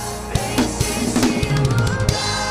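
Acoustic drum kit played over a backing track: evenly spaced kick and snare hits, then from about halfway a fast fill of rapid strokes with low tom ringing, a gospel-style drum fill.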